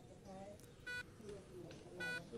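Faint electronic beeps repeating about once a second, with quiet speech underneath.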